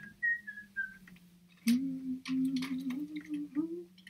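Four short high whistled notes in the first second, then a woman humming a wavering low tune for about two seconds, with light clicks and knocks of things being handled.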